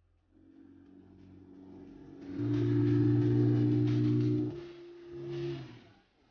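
Music: held low chord tones that swell sharply about two seconds in, shift to a different chord about four and a half seconds in, and stop just before the end.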